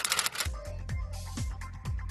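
Rapid clicking of a typewriter sound effect for about the first half second, then background music with a deep drum beat about twice a second.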